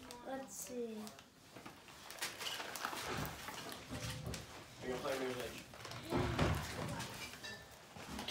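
Quiet rustling and handling noise as a fabric Christmas stocking is rummaged and a packaged item is pulled out, with a soft knock about six seconds in. Faint indistinct voices are heard near the start and about five seconds in.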